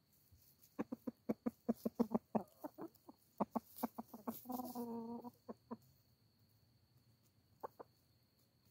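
Chickens clucking close by: a quick run of short clucks, several a second, then one longer drawn-out call about halfway through, and a few last clucks, the final two near the end.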